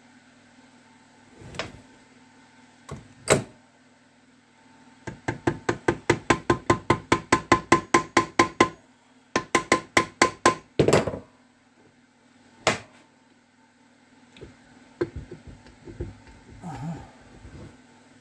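Mallet tapping on the alloy cover of a Zündapp KS600 gearbox casing to work it loose: a few single knocks, then a run of about twenty quick blows at roughly six a second, a short pause, about ten more, and a last single knock. Each blow has a short metallic ring from the casing.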